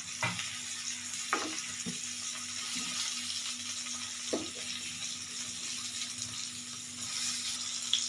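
Stuffed brinjals frying in oil in a non-stick pan, a steady sizzle, with a few light clicks as a steel ladle touches the pan while they are turned.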